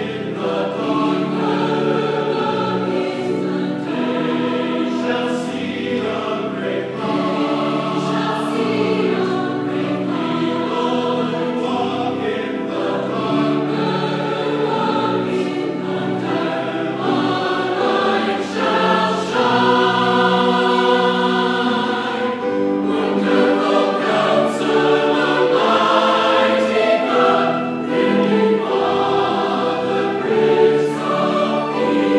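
A large mixed choir of men's and women's voices singing a sacred choral anthem in held, sustained chords, growing somewhat louder about two-thirds of the way through.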